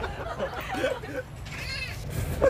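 Children's voices calling out during a game, ending in a short, high-pitched squeal near the end.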